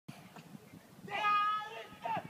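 A man's single drawn-out, high-pitched yell, held on one note for under a second, starting about a second in, over a low murmur of voices.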